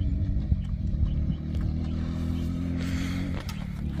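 A steady low engine hum, with a few faint clicks over it.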